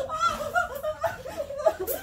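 A person laughing under their breath in short, stifled snickers, with a sharp click near the end.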